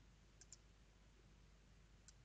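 Two faint computer mouse-button clicks close together, about half a second in, over near silence.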